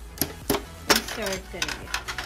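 Sharp plastic clicks and rattles from a Canon PIXMA TS3140 inkjet printer's cartridge holder as its orange packing stopper is worked loose and pulled out, about five clicks across two seconds.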